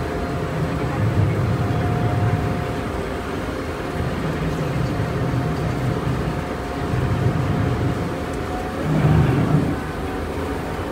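A river shuttle boat's engine running steadily as the boat pulls away from the pier, a low rumble with a steady hum over it, growing louder about nine seconds in.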